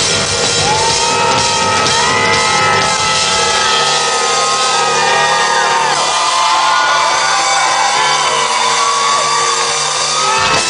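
Live rock music with a drum kit playing, and long rising-and-falling shouts and whoops over it. The low, heavy part of the drumming thins out after about six seconds.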